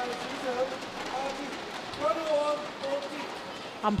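Crowd noise in an indoor sports arena between games: a steady hiss of crowd sound with a few faint voices talking under it.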